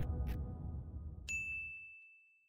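Intro music fading out, then a little past halfway a single high ding from the logo sting, held as one steady tone.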